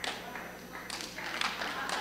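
A few scattered claps and faint voices from the congregation responding.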